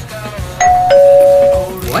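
Two-tone ding-dong doorbell chime: a higher note about half a second in, then a lower one that rings on for most of a second, over background music.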